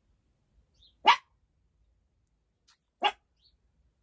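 A small dog barking twice: two short barks about two seconds apart, the first a little louder.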